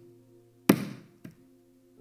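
Soft sustained chord of background music, with one sharp thump about two-thirds of a second in and a lighter tap half a second later.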